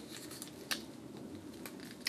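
Faint handling of stiff card as a side panel is slotted into a card frame: light rubbing of card stock with a few small ticks, the clearest about two thirds of a second in.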